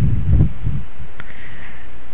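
Steady low rumbling background noise of the recording, with a few soft low bumps in the first half second and a faint click about a second in.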